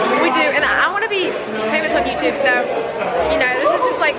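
Young women's voices talking over one another, excited chatter with no other sound standing out.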